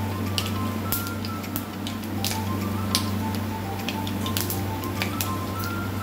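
Mustard and cumin seeds spluttering in hot coconut oil in a clay pot, the tempering stage: sharp, irregular pops every half second or so, over background music.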